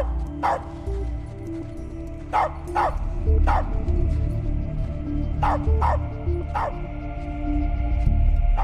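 A dog barking in short, sharp barks, six in all, some in quick pairs, over a low music score of held notes.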